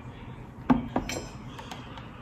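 A metal spoon clinking: one sharp click a little under a second in, then a softer one and a few faint ticks.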